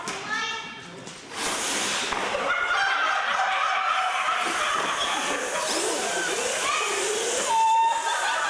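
Radio-controlled monster trucks launching about a second and a half in and running down a concrete floor: a sudden rise to a steady rush of motor and tyre noise, with voices over it.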